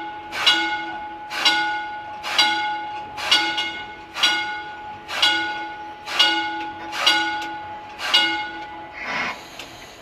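Electric railway car's bell ringing steadily, about one strike a second, each strike ringing on, nine strikes in all; it is rung as a warning while the car moves slowly into the car barn, and it stops about nine seconds in.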